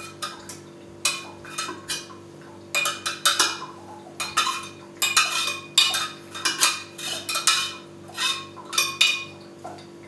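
A spoon scraping and clinking inside a copper still's column as spent lavender is dug out of it, in a string of irregular scrapes, each up to about half a second long.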